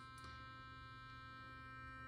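Burst sonic electric toothbrush running mid-cycle while held in the hand: a faint, steady buzzing hum.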